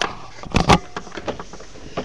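Two sharp knocks about half a second in, followed by a few fainter clicks.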